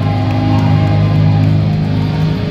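Live metalcore band playing loud, heavy distorted electric guitar and bass, a dense and steady wall of low-end sound. It is a crowd recording with muddy, poor sound.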